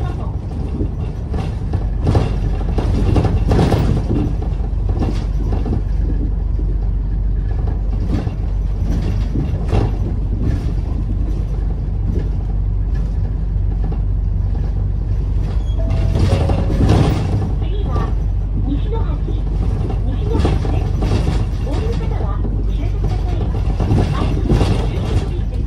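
Cabin sound of a city bus under way: the engine running and road noise at a steady level, with scattered knocks and rattles.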